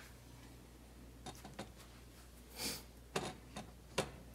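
A few faint, short clicks and taps of an aluminium stovetop espresso pot being handled and set on a glass-top electric stove, with a soft rustle past the middle, over a low steady hum.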